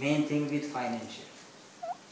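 A man's voice, a drawn-out wordless hesitation sound that fades out within about a second, followed by a brief, faint rising chirp near the end.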